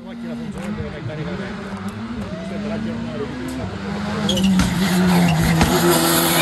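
Rally car engine revving up and down as it is driven hard through the bends, growing louder over the last two seconds as the car approaches.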